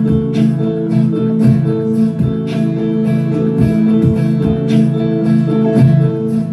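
Hollow-body electric guitar strummed live in an instrumental passage of a song, a steady rhythmic run of chords without singing.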